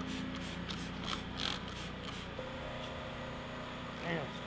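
Hand trigger-spray bottle squirting liquid onto a car's paint in quick pumps, about four or five a second, stopping a little over two seconds in; a steady low hum runs underneath.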